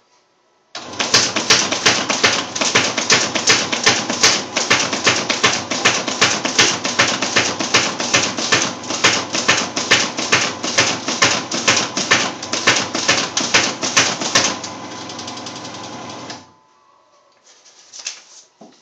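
Martin Yale automatic paper folder starting up and running through a stack of paper, with a loud, rapid, even clatter as the sheets feed and fold. Near the end the clatter stops as the last sheet goes through, and the motor runs on for about two seconds before shutting off.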